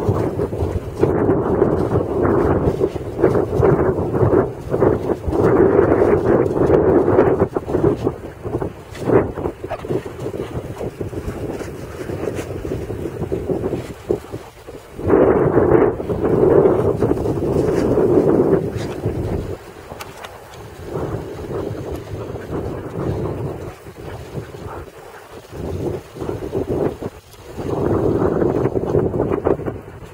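Wind buffeting the camera microphone in gusts, loudest in the first several seconds, again about halfway through and near the end.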